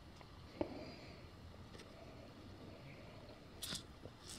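Faint handling noises of a paper CD tracklist insert: a single sharp click about half a second in and a short rustle near the end.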